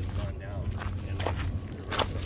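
Footsteps crunching on a gravelly dirt path, a few steps over a steady low rumble.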